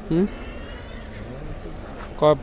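A man's voice says one short syllable right at the start, then only faint outdoor background noise with faint distant voices.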